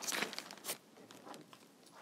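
Faint rustling of quilting fabric patches being handled and smoothed on a cutting mat, with a few light clicks. It is loudest in the first half-second, with one sharper click a little later.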